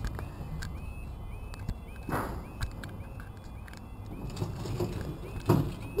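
UK level crossing audible warning alarm (yodel-type) sounding while the red lights flash: a short warbling tone repeating a little over twice a second. A low rumble of traffic sits beneath it, with a brief rush of noise about two seconds in.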